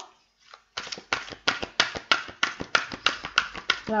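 Tarot cards being handled: a rapid run of crisp card clicks, about six a second, starting about a second in.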